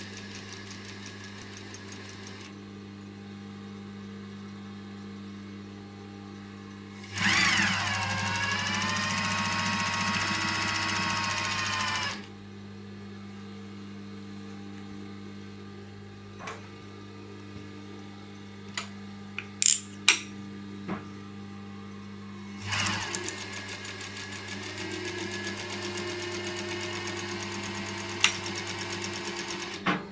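Yamata FY5565 industrial sewing machine stitching in bursts over a steady motor hum: a short run at the start, a loud, fast run with a whine that rises then holds for about five seconds, a pause broken by a few sharp clicks, then another steady run that ends just before the close.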